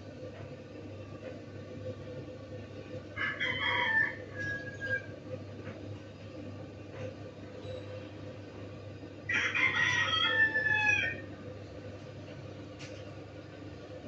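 A rooster crowing twice, each crow about two seconds long with a drawn-out falling end. The first comes about three seconds in and the second about nine seconds in, over a steady low hum.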